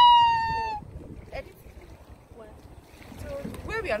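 A woman's long, high vocal cry, one held note falling slightly, ending under a second in; then a quieter stretch with a low rumble and faint voices, and chatter resuming near the end.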